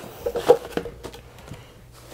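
Cardboard subscription box and its packaging being opened by hand: a few short rustles and taps, the loudest about half a second in, then faint.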